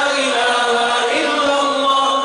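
Zikir (Islamic dhikr) chanted by men in long, steady held notes, led by a singer on a handheld microphone.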